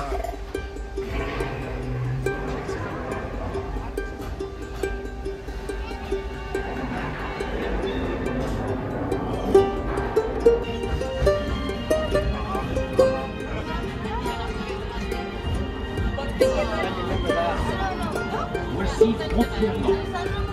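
Music playing over the low, steady rumble of the Disneyland Railroad train running along its track.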